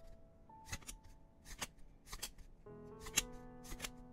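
Glossy baseball cards being flipped through one at a time, each card slid off the stack with a crisp snap, five in all at roughly one a second. Soft background music with long held notes plays underneath.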